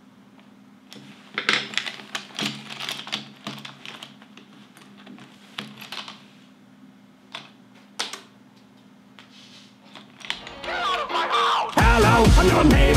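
Irregular sharp clicks and clatters of a small object handled at a table, a quick run for a few seconds, then two isolated clicks. Music swells in near the end.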